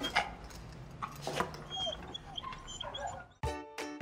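A dog whimpering and yipping in a few short, high cries that bend in pitch, over faint background music.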